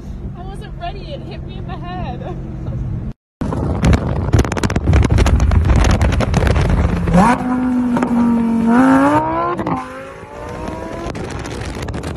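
Car engine under hard acceleration: a loud rush of engine and road noise, then the engine note climbs in pitch, levels off briefly, climbs again and drops away about ten seconds in. Before that, voices over a steady engine hum inside a car.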